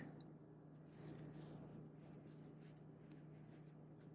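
Near silence: faint scratching and rustling of cotton yarn being worked with a metal crochet hook as a double crochet stitch is made, over a low steady hum.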